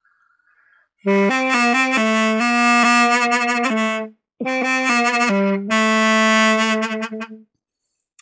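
Mey, the Turkish double-reed folk pipe, playing a folk melody in two phrases of quick, separately tongued notes, with a short break about halfway through.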